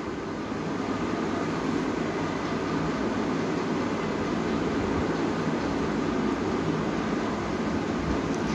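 Steady, even whir of an electric fan running, with no breaks or changes.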